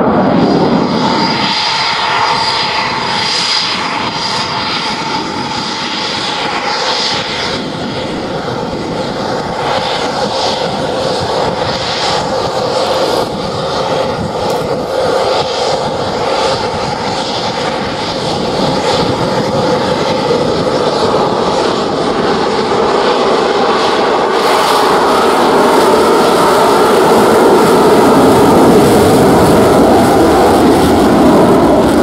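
Eurofighter Typhoon's twin Eurojet EJ200 afterburning turbofans: a continuous loud jet roar with a steady high whine. It eases somewhat in the middle and grows louder again over the last several seconds as a Typhoon begins its takeoff roll in afterburner.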